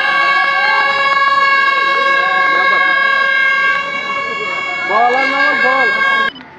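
A loud, steady horn-like tone held on one pitch, with voices shouting underneath that grow louder near the end.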